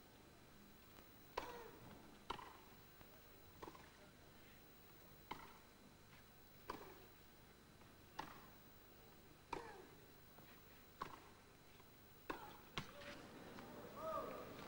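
Tennis rally: racket strings striking the ball in a steady back-and-forth, one sharp pock about every one and a half seconds, around ten shots, with two knocks in quick succession near the end.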